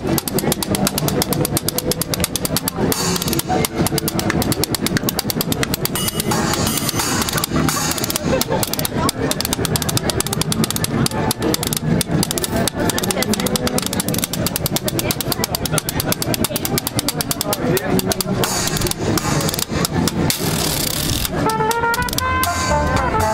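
Street jazz band playing, its rhythm section of washboard with cymbals, banjo and upright double bass keeping a steady, fast beat. Trombone and trumpet come in near the end.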